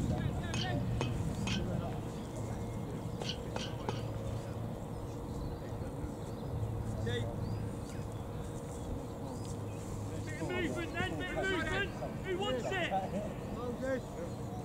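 Faint, indistinct voices carrying across an open pitch over a steady low outdoor rumble, with a run of quick, high chirps about ten seconds in.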